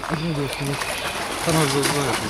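Indistinct voices in two short stretches, with no clear words, over a steady background hiss.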